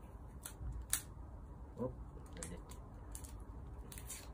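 Several small, sharp clicks of hard plastic handled in the fingers, the loudest about a second in, as the Galaxy Buds' small parts are fiddled with. A short exclaimed "oop" comes in the middle.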